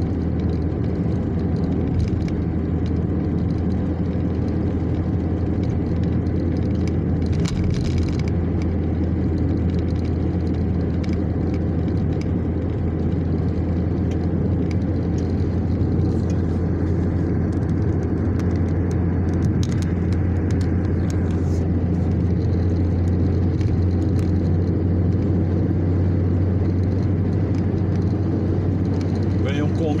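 Car cabin road noise at highway speed: a steady low drone of engine and tyres, with a few brief knocks from the road surface.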